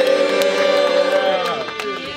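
One voice holding a long note, sung or shouted, whose pitch swells a little and then falls away, fading out about one and a half seconds in.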